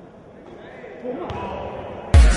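Echoing sports-hall ambience with faint distant voices, and a basketball bouncing on the court once, a little over a second in.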